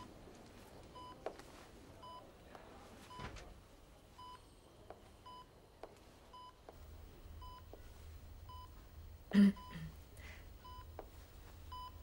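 Patient monitor beeping steadily, short evenly spaced electronic beeps about one and a half times a second, in a hospital room. About nine seconds in there is a brief, louder murmur of a voice.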